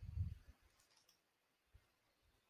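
Faint low thumps on the microphone in the first half second, then a faint click about a second in.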